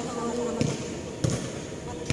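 A basketball bouncing twice on a hard court, two dull thuds about two-thirds of a second apart.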